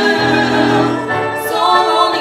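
Music: a duet's voices hold long sung notes over an instrumental accompaniment whose low notes step to a new pitch about a second in.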